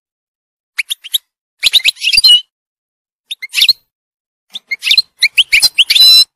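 European goldfinch singing: quick, high twittering notes in four short phrases with brief pauses between, starting about a second in, the last phrase the longest.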